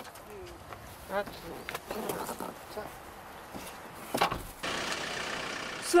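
Hyundai Porter II truck: a door shuts with a sharp bang about four seconds in, then a steady noise as the truck moves off. Faint voices before it.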